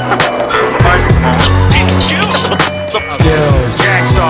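Hip-hop music playing loudly, with a skateboard's wheels rolling on smooth concrete and the sharp clacks of the board mixed in.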